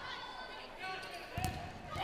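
Volleyball rally on an indoor court: a ball strike about one and a half seconds in, over faint crowd and player voices in the arena.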